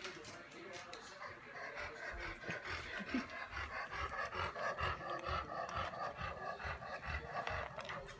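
Dog panting steadily, about three breaths a second.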